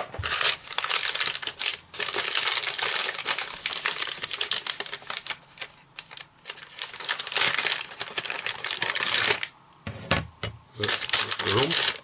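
Brown wrapping paper crackling and rustling as it is handled and unfolded from around a model part, dense crinkling that eases off near the end.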